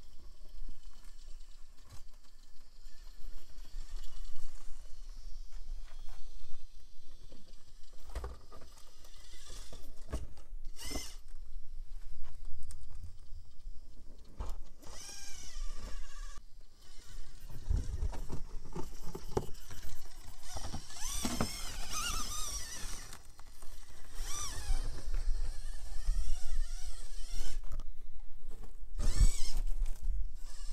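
Traxxas TRX-4M micro RC crawler working over rock: its small electric motor and drivetrain whine, wavering up and down in pitch with throttle and load. Tyres and chassis knock against the rock now and then.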